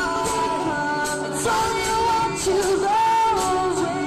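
Live band playing a folk-rock song on banjo, electric bass, acoustic guitar and drums, with voices singing long held notes. It is recorded right next to the PA speaker, so the sound is loud and rough.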